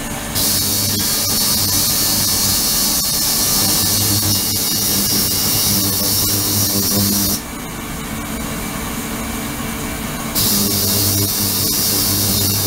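Ultrasonic cleaning tank running: a steady hiss of cavitating water over a low electrical hum. The high hiss cuts out about seven seconds in and comes back near the end, leaving the hum alone in between.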